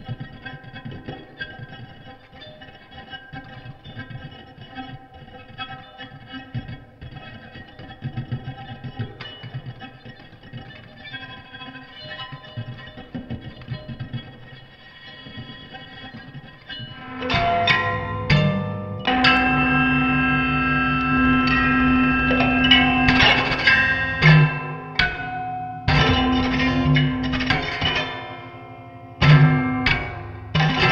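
Electric guitar improvisation through effects and a Hiwatt amplifier, the playing layered with a delayed echo of itself. Quiet sustained tones for about the first half grow louder and denser from about 17 s in over a steady low drone, breaking off briefly twice near the end.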